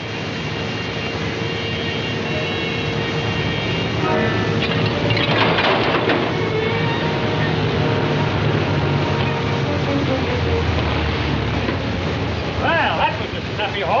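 Steady roar of rushing water from a waterfall, swelling slowly, with sustained tones over it. A burst of noise with shouting comes about five seconds in, and a voice cries out near the end.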